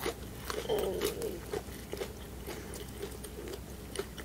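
Close-miked chewing of a mouthful of shrimp tempura, the crisp fried batter crunching in many small sharp crackles, with a short pitched mouth sound about a second in.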